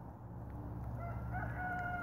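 A faint rooster crow: one drawn-out call starting about halfway in, stepping up slightly in pitch and then holding.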